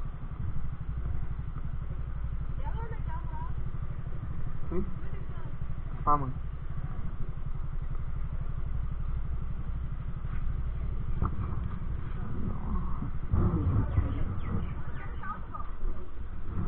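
Motorcycle engine idling steadily while the bike stands still, a low even hum. Faint voices of people nearby come and go over it.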